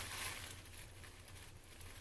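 Faint rustle of stretchy knit fabric, the sock upper of a peep-toe sock boot being pulled and stretched between the hands, dying away to quiet room tone within about a second.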